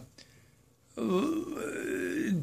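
A man's low, drawn-out hesitation vocalisation, a held 'uhhh' that begins about a second in after a short silence.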